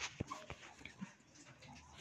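Faint room tone in a pause between words, with a few soft clicks in the first second.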